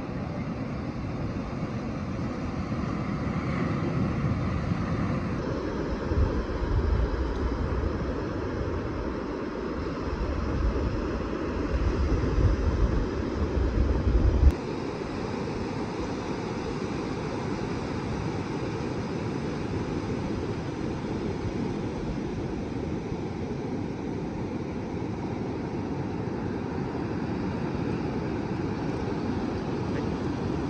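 Ocean surf breaking on a beach, heard as a steady rush of noise. From about six seconds in, wind buffets the microphone in low rumbles, which stop abruptly about halfway through.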